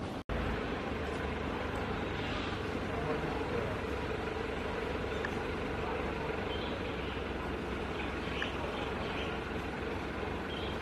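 Steady outdoor background: a low rumble like distant traffic, with a faint steady hum and faint indistinct voices. The sound drops out completely for a moment just after the start.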